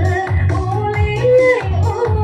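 A woman singing a Rijoq song through a microphone over amplified backing music, with a steady beat of about two beats a second.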